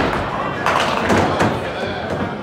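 A duckpin bowling ball thuds onto the wooden lane on release and rolls, then clatters into the pins about a second in, knocking several down.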